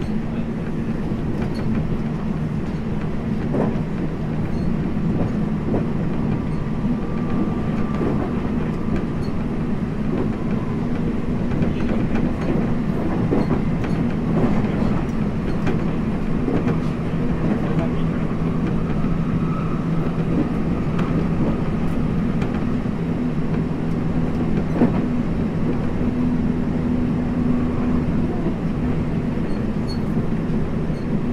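Inside a JR West 225-0 series electric train running along the line: a steady low rumble of wheels on rail, with scattered rail-joint clicks and a faint high tone that comes and goes twice.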